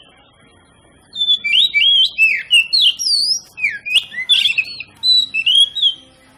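Oriental magpie-robin singing: a rapid run of varied, sliding whistled notes. It starts about a second in and lasts about four and a half seconds.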